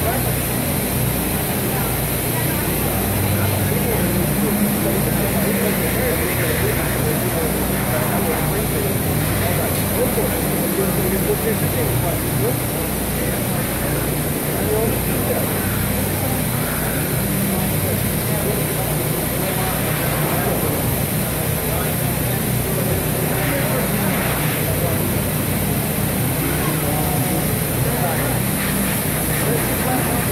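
Indistinct voices of people talking over a steady, unchanging low hum.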